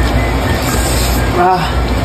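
A man slurping and eating spicy instant noodles, a dense noisy rush at the mouth, broken about one and a half seconds in by a short pained "waa!" at the heat.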